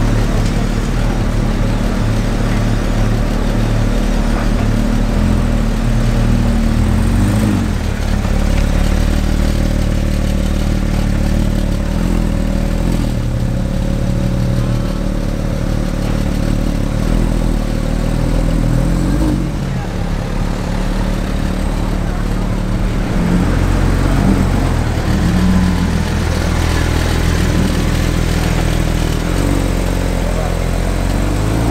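Porsche 991 Speedster's naturally aspirated 4.0-litre flat-six idling and creeping along in traffic with a steady low note. It gives a few brief light revs, one about 7 s in, one around 19 s and several between about 23 and 26 s.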